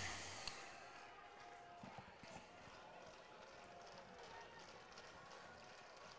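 Near silence: faint ballpark ambience with a few soft ticks.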